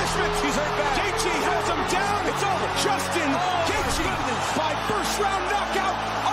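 Arena crowd cheering and yelling, many voices at once, as a fighter is stopped on the canvas, over steady background music.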